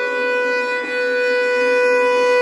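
Carnatic violin holding one long, steady bowed note in raga Begada.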